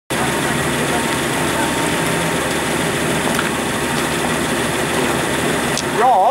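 Small vintage car's engine idling steadily under a constant background hiss.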